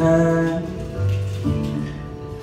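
Acoustic guitar and stage keyboard playing a slow instrumental passage, a new chord struck at the start and the chord changing again about a second and a half in.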